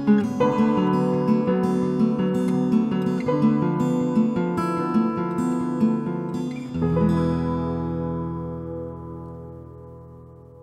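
Acoustic guitar closing out a song: picked notes, then a final chord about seven seconds in that is left to ring and fade away.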